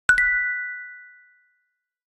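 A two-note chime sound effect for a logo: two quick bright strikes, the second a step higher, both ringing on and fading away over about a second and a half.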